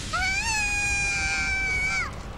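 A child's long, high-pitched scream that rises at the start and is held steady for nearly two seconds before cutting off.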